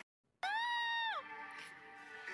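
A brief dead silence, then one drawn-out meow-like cry that rises, holds and drops away, over faint music.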